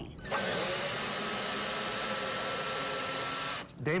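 A small motor running steadily with a hissing rush and a faint high whine, cutting in and out abruptly.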